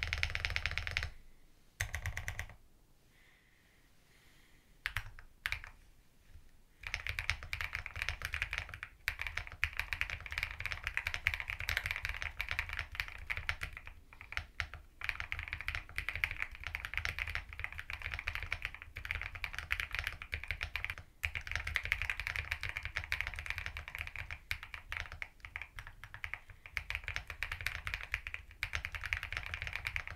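Mechanical keyboard with thick PBT cherry-profile keycaps in a metal case being typed on. A few short bursts of keystrokes come in the first seconds, then steady, fast typing from about seven seconds in.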